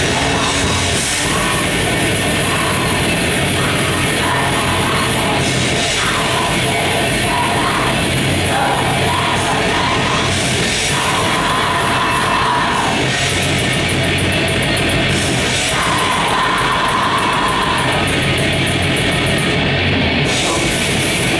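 A heavy metal band playing live at full volume: distorted electric guitars and a drum kit in a steady, unbroken wall of sound.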